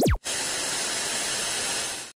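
Sound effect of a channel logo ident: a quick falling swoosh tone, then a steady hiss like static that holds evenly for nearly two seconds.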